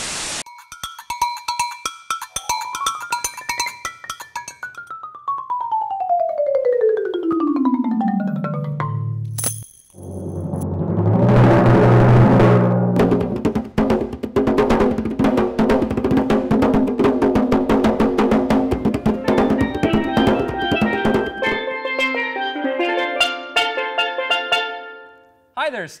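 Percussion music: mallet-percussion notes with a tone that rises and then slides slowly down, then fast hand drumming on a skin-headed hand drum for about ten seconds, ending with a short run of marimba-like mallet notes.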